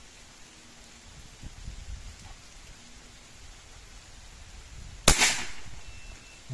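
CBC B57 unregulated .177 (4.5 mm) PCP air rifle firing a single shot about five seconds in: one sharp report with a short decaying tail. The pellet crosses the chronograph at 280.9 m/s.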